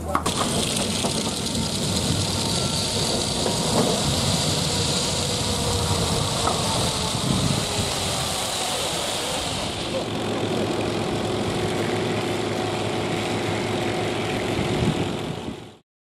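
Fishing boat's engine running as the boat moves off across the harbour, with a steady rushing of water and some voices. A steady engine drone comes forward over the last few seconds, then the sound fades out.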